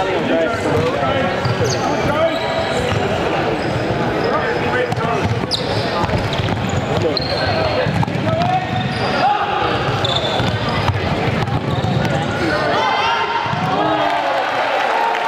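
Players' shoes on a hardwood sports-hall floor: running footfalls, knocks and several short high squeaks, under continuous chatter and shouts from players and spectators in a large echoing hall.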